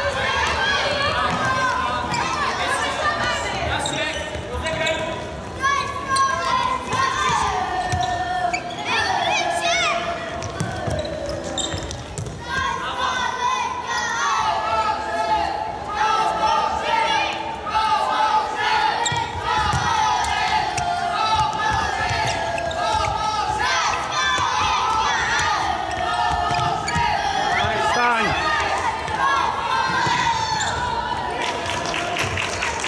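Indoor futsal being played on a hard sports-hall court, with the ball being kicked and bouncing on the floor, shoes squeaking, and children's voices calling out, all echoing in the hall.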